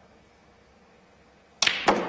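Snooker shot in a hushed arena: near the end the cue tip strikes the cue ball, followed a split second later by the sharp click of the cue ball hitting the black.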